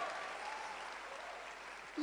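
Audience applause, a steady patter of clapping that slowly dies away.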